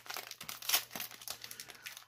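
Shiny foil wrapper of a 2019-20 Mosaic basketball trading-card pack crinkling and tearing as it is peeled open by hand: a string of small crackles, the loudest about three-quarters of a second in.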